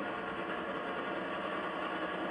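Steady engine drone of a tour tram rolling along at low speed, heard from aboard.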